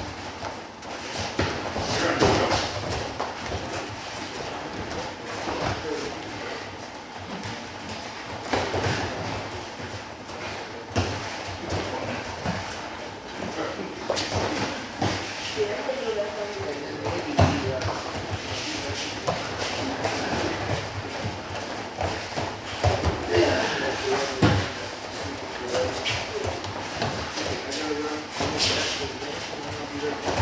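Judo sparring on mats in a large hall: irregular thuds and scuffs of feet and bodies on the mats, with indistinct voices talking in the background.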